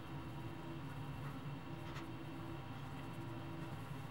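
Quiet room tone: a faint steady low hum, with a soft click about two seconds in.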